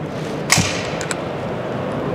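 A sharp metallic click about half a second in, then two light ticks, as the removable breech block of a Merkel K5 break-action rifle is released by its push button and taken out. Steady background noise of a busy hall runs underneath.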